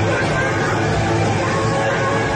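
Live hard rock band playing without a break: electric guitars, bass and drums, loud and steady, in a concert-hall recording.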